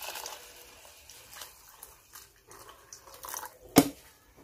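Water poured from a jug into a stainless steel pot of rice, splashing unevenly as the pot fills. A single sharp knock near the end.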